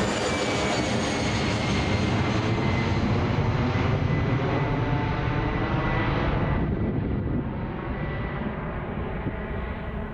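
A fixed-wing airplane passing by. Its engine is a steady rush with a thin whine that slowly falls in pitch. The higher part of the sound dies away from about seven seconds in as the plane moves off and grows quieter.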